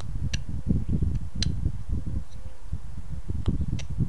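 Carving knife cutting into a small hand-held wood figure: a steady low scraping rustle of blade and hands on the wood, with about four sharp clicks.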